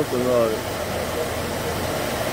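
Steady hum of a 1980 Ford Landau's air conditioning running with the engine idling, just recharged with refrigerant and cooling. A man's voice is heard briefly at the start.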